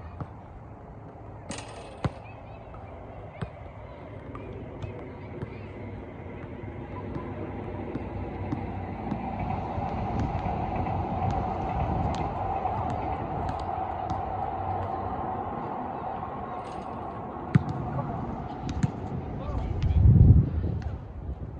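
Soccer ball being kicked on a grass field, a few sharp isolated thuds, over an outdoor background hum that swells in the middle and fades. A heavier thud comes at the very end.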